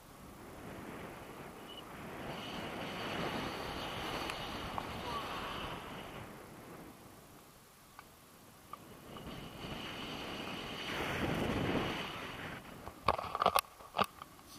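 Wind rushing over the camera microphone in flight under a paraglider, swelling twice and easing between, with a few sharp clicks near the end.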